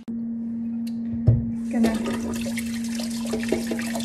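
Kitchen tap running water into a metal cezve (Turkish coffee pot), the flow starting about two seconds in after a low thump, over a steady hum.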